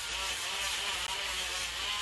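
Electric nail grinder buzzing steadily as it files a dog's nails, smoothing the sharp edges left by clipping.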